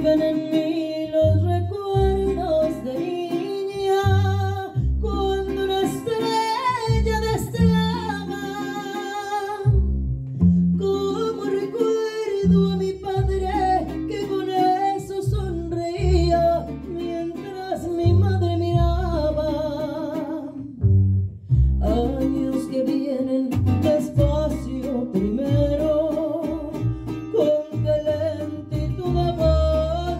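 A mariachi band plays with a woman singing lead into a microphone, over strummed guitars and a strong, deep plucked bass line. The singing breaks briefly between phrases twice.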